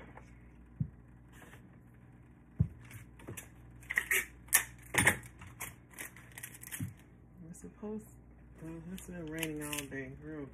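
Bottles and small items knocking as they are handled in a cardboard gift box and set down on a tabletop, with a flurry of crackly tearing, tape being pulled and torn, in the middle. A woman's voice starts near the end.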